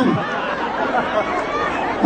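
Crowd chatter: many voices talking at once, with no single voice standing out.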